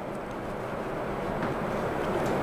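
Steady background room noise, a low hum with hiss, slowly getting a little louder, with no speech.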